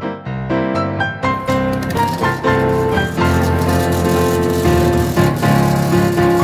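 Instrumental background music led by piano notes, with a full, steady accompaniment.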